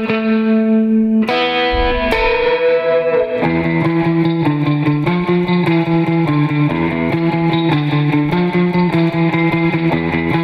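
Surf-style electric guitar on a Fender Jaguar: rapid tremolo picking of two-note double stops, the pick sweeping across two strings. About a second in, a chord rings out for a couple of seconds, then the fast picking resumes on two-note shapes that step up and down in pitch.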